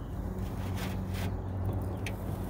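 Hooked smallmouth bass splashing at the water's surface beside the boat, a few short splashes over a steady low hum.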